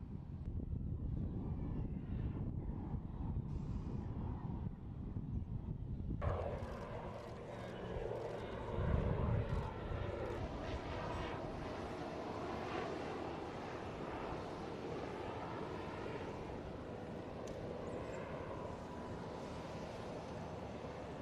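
Aircraft engine noise: a deep rumble at first, then, after a sudden change about six seconds in, fuller, steady engine noise with a wavering whine in it and a brief louder swell about three seconds later.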